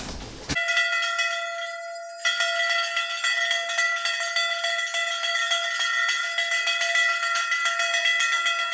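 Several brass bells, handbells and a hanging bell, rung together without a break. They make a steady, dense jangle of overlapping ringing tones that starts abruptly about half a second in and dips briefly around two seconds.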